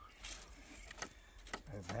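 Faint scattered knocks and clicks of firewood and a wooden trailer as a man climbs up onto the loaded trailer, with a short low voice near the end.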